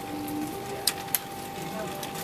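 Homemade grapefruit-slicing machine standing by while it reads the segment positions: a steady thin whine, with two sharp clicks about a quarter of a second apart a little before the middle.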